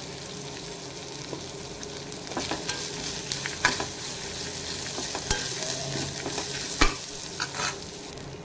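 Dried red chillies, curry leaves and dal frying in oil in a pan, sizzling steadily. A spatula stirs and scrapes them from about two seconds in, with sharp clicks against the pan and one louder knock near the end.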